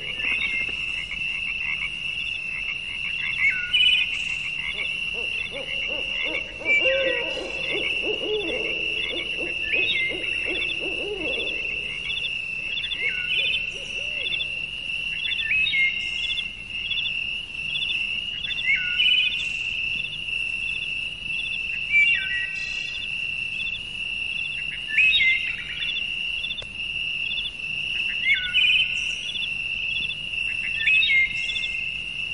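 Wildlife-style ambience: a steady, high-pitched pulsing trill, with short falling calls every few seconds and a lower warbling call between about six and twelve seconds in.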